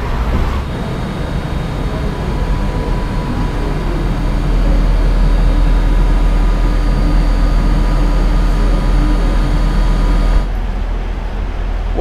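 Electric S-Bahn train giving a steady low rumble with a steady hum over it. The hum grows stronger about four seconds in and cuts off abruptly shortly before the end.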